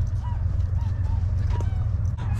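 Steady low wind rumble on the microphone, with a few faint, short chirping calls from a flock of birds flying overhead.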